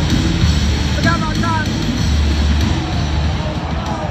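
Loud music with a heavy bass line playing over an arena sound system, mixed with the chatter of a large crowd; a few voices stand out about a second in.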